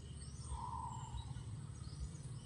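Faint outdoor ambience: a steady low rumble with a few faint, distant bird chirps, and a brief faint tone about half a second in.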